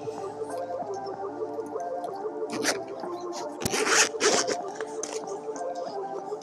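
Zipper of a hardshell drone case pulled open in a few short pulls about halfway through, over steady background music.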